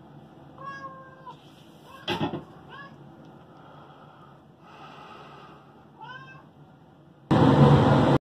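A domestic cat meowing three times: a longer meow about half a second in, then short ones near three and six seconds, with a thump about two seconds in. A sudden loud burst of noise cuts in near the end.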